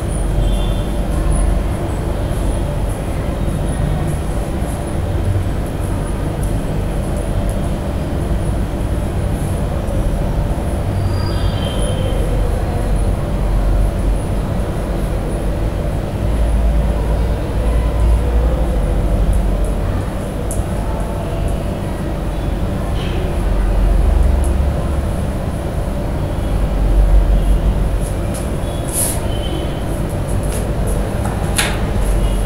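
A steady low rumble of background noise, swelling a little now and then, with a few faint scratches and taps of chalk on a blackboard as a drawing is made.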